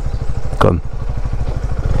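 Honda CB125R's single-cylinder four-stroke engine running at low revs, a steady rapid putter of firing pulses.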